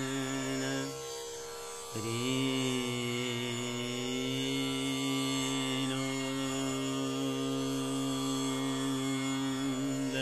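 Male dhrupad voice singing the slow, unmetred alap of Raga Bageshri over the steady drone of a tanpura. A long held note breaks off about a second in; after a brief gap the voice comes in again with a small slide and holds one note, gently wavering, until near the end.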